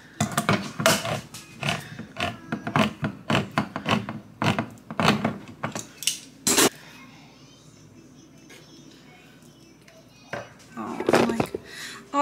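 A hand-held crank can opener cutting around the lid of a soup can: a fast, uneven run of clicks for about six seconds that ends in one sharp clank, then a few knocks and handling sounds near the end.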